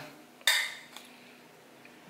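A single sharp clack with a short metallic ring about half a second in, from a wooden noose-snare frame with wire stakes being handled and knocked.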